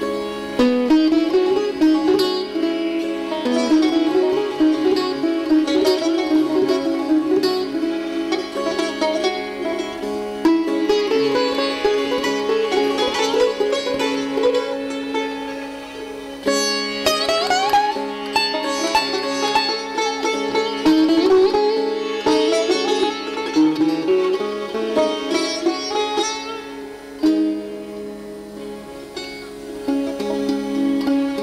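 Sitar playing quick runs of plucked notes with sliding pitches over a steady low drone, in a live Indian–Persian string ensemble performing a traditional Persian melody in Dastgah-e Nava.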